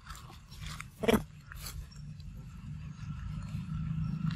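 Young macaque eating ripe mango: small wet bites and chewing with short crackles, likely its feet and hands shifting on dry leaves. About a second in, a short falling voice cuts in, heard as a "hey" with a laugh.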